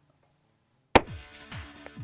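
A single rifle shot about a second in, sharp and loud after near silence, followed by music.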